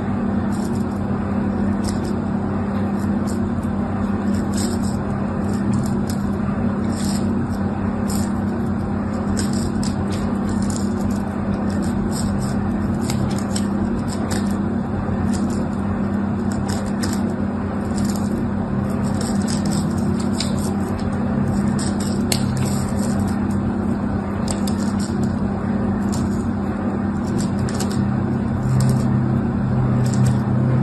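A craft knife blade scoring lines into a bar of soap: short, irregular, crisp scratches, one or two a second, over a steady low hum that is the loudest thing throughout.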